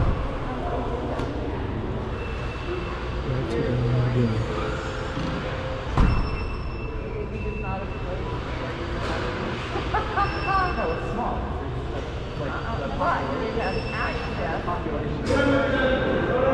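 Ambient din of a large indoor public hall: a steady background hum with the voices of people talking around it, and two sharp knocks, one at the start and one about six seconds in.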